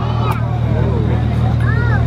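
Steady low hum of a tour train's engine running, with scattered voices over it.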